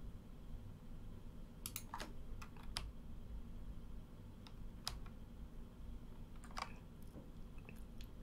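Faint, irregular clicks of a computer keyboard or mouse being worked, some in quick pairs, starting a little under two seconds in, as moves are stepped back on an on-screen chessboard. A low steady hum lies under them.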